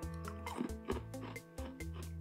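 Background music with a steady beat under held notes.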